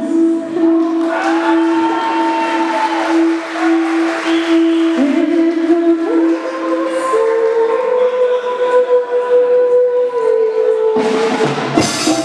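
Live cumbia band in a slow, sparse passage of long held melodic notes that step and glide from pitch to pitch over light accompaniment. About eleven seconds in the full band with drums, bass and percussion comes back in.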